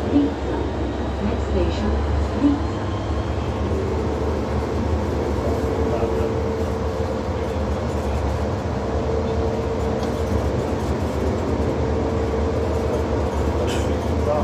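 Rubber-tyred VAL automatic metro train running at speed through a tunnel, heard from inside at the front of the car: a steady low rumble with a held mid-pitched hum that swells now and then, and a couple of small knocks in the first few seconds.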